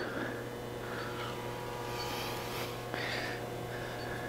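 Steady low electrical hum in a quiet room, with faint soft rolling and scuffing from the wheeled ADAS calibration frame as it is pushed forward on its casters, and a small tick about three seconds in.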